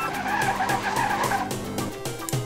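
Car tyre skid sound effect, a screech of about a second and a half, over background music.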